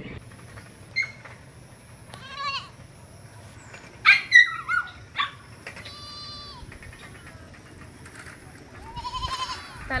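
A goat bleating close by: several short, wavering calls, the loudest about four seconds in.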